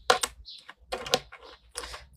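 A run of light, irregular clicks and taps, about half a dozen in two seconds, like fingertips or nails typing.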